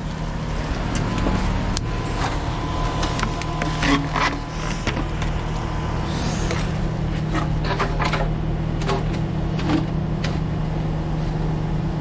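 An engine runs steadily at an even pitch throughout, with scattered knocks and clatter from equipment being handled.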